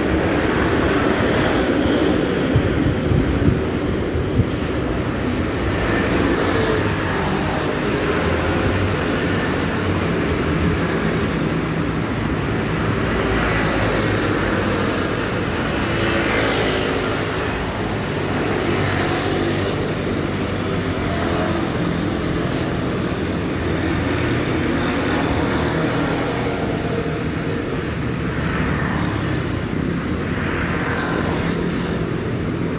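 Steady road traffic from a busy multi-lane city street, with motor vehicles passing and several louder pass-bys partway through.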